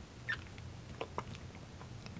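Quiet room with a few faint, short clicks, spread out and irregular.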